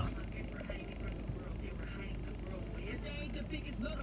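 Faint rapped vocal lines played back with the beat dropped out, over a low steady hum.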